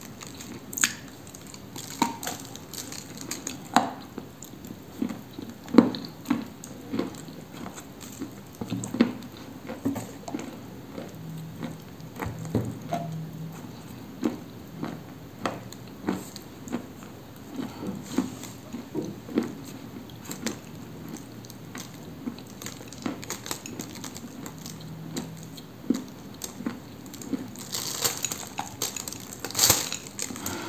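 Close-miked chewing of a cookie of Cambrian clay coated with clay paste: irregular sticky mouth clicks and soft crunches, with a louder bite near the end.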